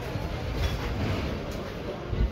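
Steady low rumble and hiss of outdoor background noise, uneven in the lowest range.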